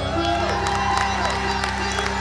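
Dance music on a held low chord, with audience cheering and a few rising-and-falling whoops over it, and scattered sharp claps or jingles.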